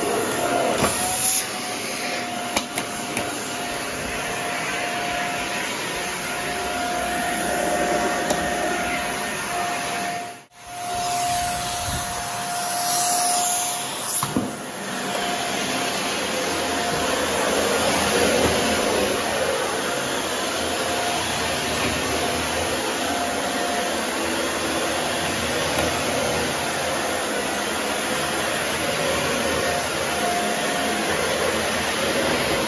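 Dyson Ball upright vacuum cleaner running steadily over carpet, a steady rushing with a thin whine. The sound drops out sharply for a moment about ten seconds in, then comes back.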